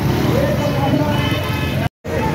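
Road traffic noise from a slow-moving convoy of cars and pickup trucks, a steady low rumble with voices calling out over it. The sound cuts out abruptly for a moment just before the end.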